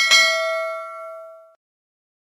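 Notification-bell sound effect of a subscribe animation: one metallic ding at the start, ringing with several clear tones and fading out over about a second and a half.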